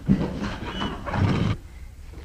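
A horse whinnying once, for about a second and a half, then cutting off.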